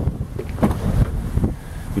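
Wind buffeting the microphone: a low, uneven rumble with several dull bumps.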